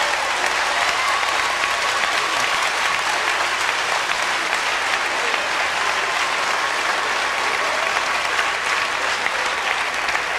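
A large audience applauding steadily, a sustained ovation.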